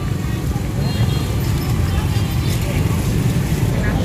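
Busy street-market ambience: background voices over a steady low rumble of road traffic and motorbikes.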